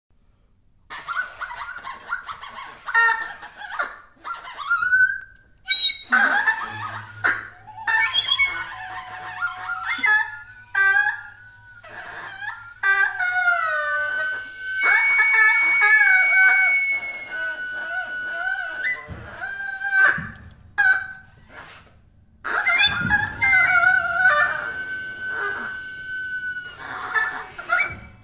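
Duck call blown in free improvisation: squawking quacks that bend up and down in pitch, in short phrases with brief gaps, and a held high note near the middle. A low steady hum runs underneath from about seven seconds in until about nineteen.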